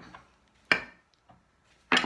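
Solid 3D shape models clacking against each other as they are shoved into a cloth drawstring bag: two sharp knocks about a second apart.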